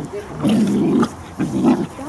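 German Shepherd puppies growling while they play-fight, two rough growls of about half a second each, the first about half a second in and the second near the end.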